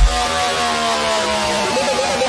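Electronic bass music in a breakdown: the heavy bass drops out at the start, leaving sustained synth tones that slowly slide down in pitch over a bed of noisy hiss.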